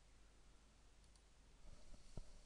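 Faint computer mouse button click, two quick ticks about a second in, over near-silent room tone.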